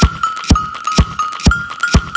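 Minimal tech-house track: a four-on-the-floor electronic kick drum at about two beats a second under a high, steady synth tone with short repeating blips and crisp hi-hat-like ticks between the kicks.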